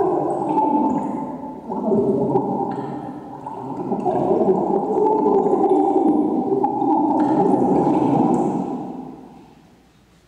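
A low, wavering electronic drone that swells and dips, then fades out near the end.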